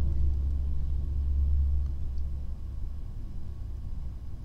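A low, steady rumble that fades down about two and a half seconds in.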